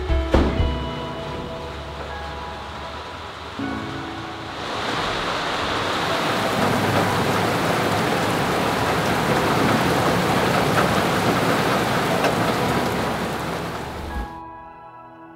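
Steady rain falling, coming in about four and a half seconds in after a piece of music fades out near the start.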